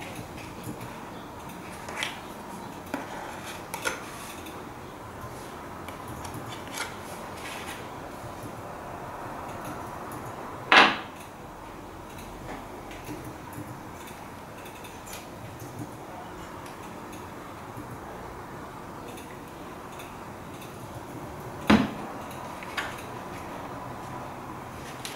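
Metal palette knife working paint on a paper-plate palette: soft scraping with scattered light clicks, and two sharper knocks about 11 and 22 seconds in.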